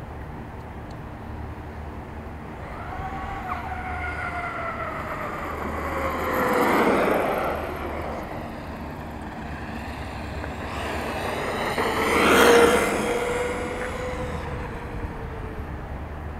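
Traxxas X-Maxx RC monster truck running on 8S power and passing close by twice on asphalt: a brushless-motor whine that drops in pitch as it goes by, with tyre noise. It is loudest about seven seconds in and again about twelve seconds in.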